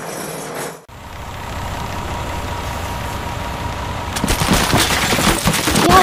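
Cartoon sound effects of a monster truck's engine running steadily. About four seconds in, it gives way to a loud clatter of many bricks crashing and tumbling as the truck smashes through a brick wall.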